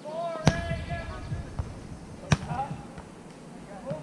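A volleyball being hit by players during a rally: two sharp slaps about two seconds apart.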